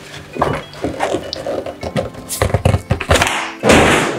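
A cardboard box and a padded nylon-bagged tripod handled on a wooden table: scattered knocks and thunks, a quick run of them in the second half, then a loud, short thud and rustle near the end, really loud.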